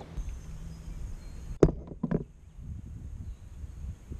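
A single sharp knock about a second and a half in, followed by two fainter ones, over a low rumble of wind on the microphone.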